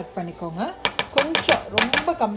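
A woman speaking, with a quick run of sharp clicks and knocks starting about a second in: a wooden spatula scraping and tapping a plastic bowl over a frying pan as the bowl's contents are emptied in.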